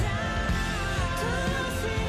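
Worship song: a woman singing lead over band accompaniment, her voice gliding between held notes.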